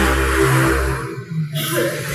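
A man's voice over a handheld microphone, trailing off about a second in, over a low steady hum.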